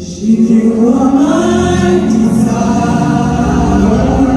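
Gospel praise choir singing together in long held notes, coming in just after a brief lull at the start.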